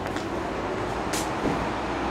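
Outdoor ambience: a steady low rumble of distant traffic or wind, with a short hiss a little after a second in.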